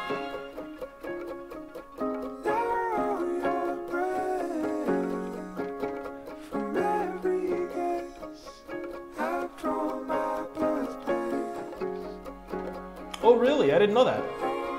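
Indie folk song playing: a male singer's soft, high vocal over plucked guitar and sustained notes, the voice swelling louder near the end.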